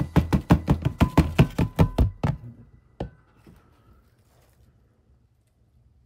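A hand rapping on an upturned clear plastic storage tub, about a dozen quick knocks in two and a half seconds, then one last knock a little later, shaking isopods and their substrate out into the terrarium.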